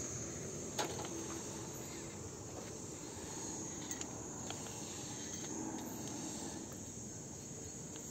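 Insects chirring steadily at a high pitch, with a couple of faint clicks about a second in and around four seconds.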